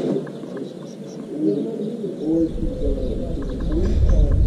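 Doves cooing in low, bending calls, with a low rumble coming in about halfway through.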